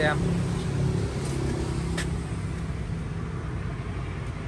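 A car engine idling with a steady low hum that fades slightly, and a single light click about two seconds in.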